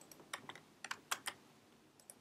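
Faint typing on a computer keyboard: a quick run of light keystrokes in the first second and a half.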